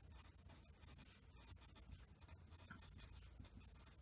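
Pencil writing on lined paper: faint, irregular scratching of the lead as words are written out.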